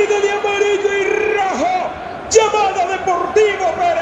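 Football radio commentator's long, drawn-out goal shout ('gooool'), a loud voice held on one high pitch and picked up again strongly about two seconds in.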